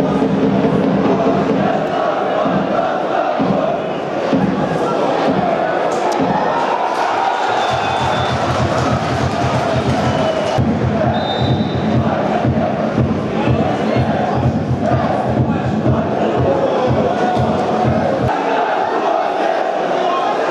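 Football stadium crowd chanting. A steady low drumbeat runs from about eight seconds in until near the end.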